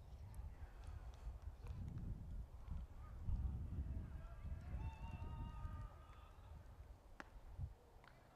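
Faint outdoor ambience at a baseball field: a low rumble of wind on the microphone, a distant shouted call from the field about halfway through, and one short sharp click near the end.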